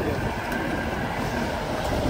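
Diesel semi-truck with a tipper trailer driving slowly past, its engine running steadily.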